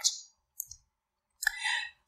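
A pause in a talk: a couple of faint clicks, then a short intake of breath near the end, just before the speaker goes on.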